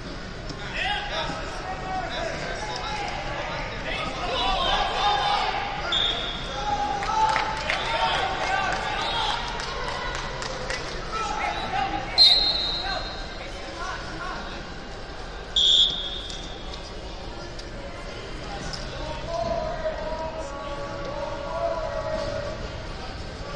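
Echoing wrestling-hall hubbub: voices calling out, thuds on the mats, and two short, shrill whistle blasts, each about a second long and some three seconds apart, around the middle. The first blast is the loudest sound. They fit a referee's whistle stopping and restarting the bout.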